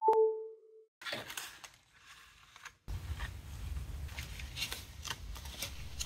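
A short two-tone electronic chime with a click at the very start, the title card's sound effect. Then faint clicks and rustling of hands handling a new iPhone battery cell in its plastic tray, a little louder from about three seconds in.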